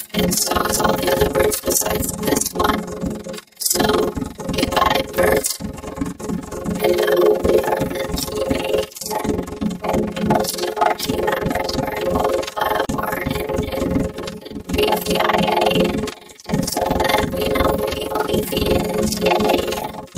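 Heavily edited cartoon soundtrack: voice and sound clips chopped up and run together, with several abrupt cuts to silence.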